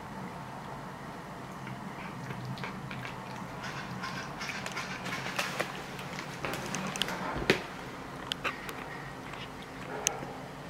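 A cat eating slowly from a plate: irregular chewing and mouth clicks that build to a busy stretch in the middle, with one sharper click, and thin out near the end. The owner hopes the slowness is just relish and not a dental problem. A steady low hum runs underneath.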